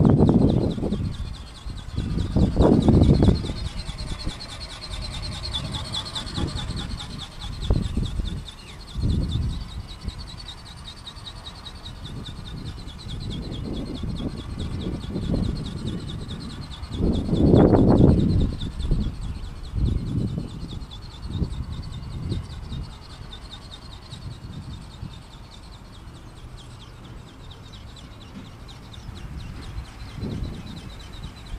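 Gusts of wind buffeting the microphone in irregular bursts, strongest at the start and about 18 seconds in, over the steady high whine of a radio-controlled model airplane's motor flying overhead, its pitch bending slightly as it passes.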